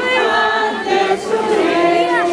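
A crowd of procession marchers singing a hymn together, many voices holding long notes.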